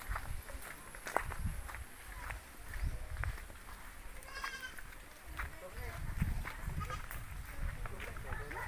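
A goat bleats once, briefly, about halfway through, over footsteps on a dirt-and-gravel trail with low bumps and clicks.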